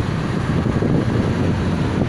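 Wind rushing over the microphone on a moving motorcycle, mixed with its engine and road noise: a loud, steady rush with no breaks.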